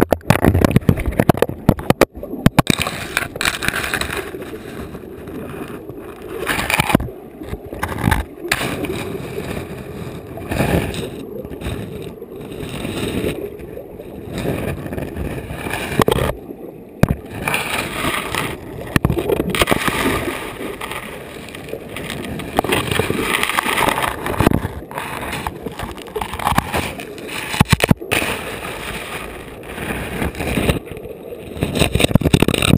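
River water gurgling and rushing around a camera held underwater, the sound muffled and rising and falling unevenly, with scattered sharp knocks and scrapes as it moves over the gravel bed.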